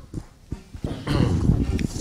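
Handling noise from a handheld microphone as it is passed from hand to hand: a few soft knocks, then about a second of low rubbing and bumping as it is grabbed.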